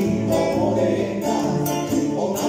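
Live trio music: two acoustic guitars playing with congas, and two men's voices singing together.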